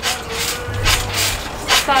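A person's voice, starting a countdown near the end.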